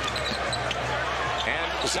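Basketball being dribbled on a hardwood court over a steady arena crowd hum.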